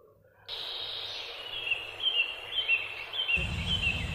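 Outdoor rural ambience: a steady background hiss with a bird calling over and over in short chirps, about two a second, and a low rumble joining near the end.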